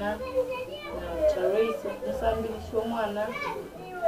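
A woman talking steadily in a language other than English, in an interview.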